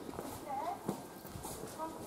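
Faint voices of people talking in the background, with a few sharp knocks like footsteps on a hard path, one a little under a second in.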